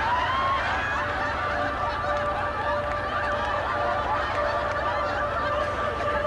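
Sitcom studio audience laughing and hooting, many voices at once. A steady held tone joins about a second in.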